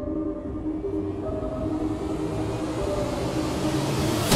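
Background music with sustained synth chords over a low rumble. It slowly swells in loudness and brightness, building toward a louder passage.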